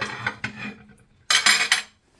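Kitchen dish handling: a plate of cut fruit set down on the counter, with one short scrape about a second and a half in.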